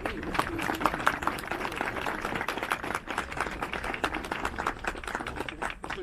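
A group of people clapping together, a quick irregular patter of many hands, with voices mixed in; the clapping fades out near the end.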